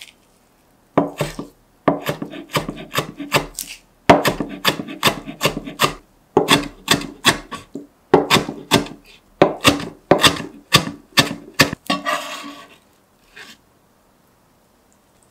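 A broad-bladed knife rapidly chopping seasoned pickled cucumber (oiji muchim) on a cutting board: quick strikes, about four to five a second, in runs with short pauses, starting about a second in. A brief scraping sound near the end.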